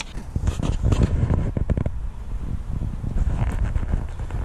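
Wind buffeting the microphone, a steady low rumble, with a few light clicks and knocks about a second and a half in.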